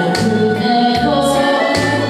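A woman singing a Korean popular song into a handheld microphone over a backing track with bass and a steady drum beat.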